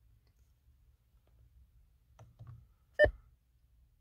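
The voice control of a 2016 Mercedes-Benz S550 being activated: a few faint handling sounds, then one short, sharp click about three seconds in, over a faint low hum.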